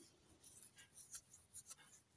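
Faint scratchy rustling with a few light clicks, small handling noises close to the microphone.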